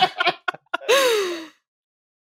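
People laughing in short bursts, ending in one drawn-out voice sound that falls in pitch like a sigh. The audio then cuts off to silence about a second and a half in.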